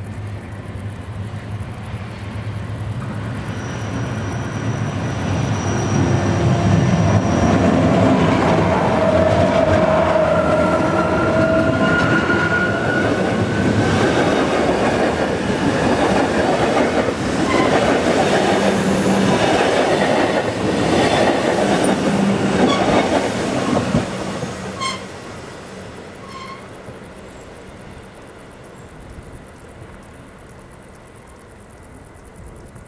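Rhaetian Railway electric train, a red railcar hauling panoramic coaches, running into a station on a curve and passing close by. A low hum builds and the wheels squeal in drawn-out tones on the curve, then the wheels clatter loudly as the coaches go past. The sound falls away suddenly about 24 seconds in.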